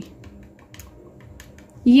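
Faint, irregular light clicks and taps of makeup tools: a spatula and a plastic compact case knocking against a small glass mixing bowl while powder is being added.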